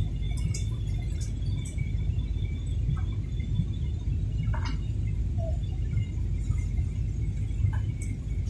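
Steady low rumble of a jet airliner's cabin on the approach before landing, the engine and airflow noise heard from a window seat, with a few faint clicks.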